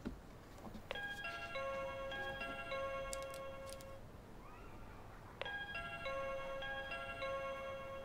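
Electronic doorbell playing its short chime melody twice, each ring lasting about three seconds, the second starting about four and a half seconds after the first.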